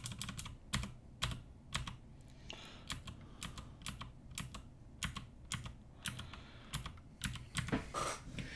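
Computer keyboard keys clicking in an irregular run of keystrokes, several a second and spaced unevenly. They come as the cursor is moved through lines of code and Return is pressed near the end.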